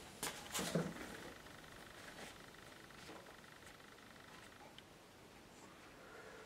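Handling of a watercolour painting on paper and its card mount: a few brief rustles and taps in the first second, then faint room tone.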